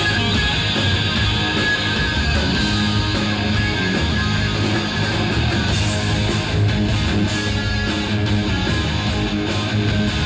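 Live hard-rock band playing: distorted electric guitars, bass guitar and a drum kit, loud and steady, heard through a phone's microphone in the audience.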